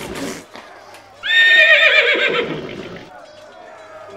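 A horse whinnying: a long, high, wavering call about a second in that falls away and fades, after the tail of an earlier whinny dies out at the start.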